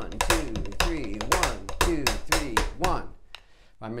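Drumsticks tapping a steady beat in three-four time to a spoken count, stopping about three seconds in.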